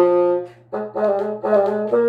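Bassoon playing a melody: a held note fades out about half a second in, a brief breath, then a quick run of short notes.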